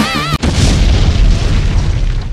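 A held, wavering note in the music is cut off about half a second in by a loud explosion boom, a deep rumble that slowly fades away.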